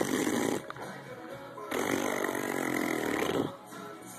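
A baby making rough, raspy vocal noises: a short one at the start and a longer one of about two seconds starting a little before halfway. Quiet music plays underneath.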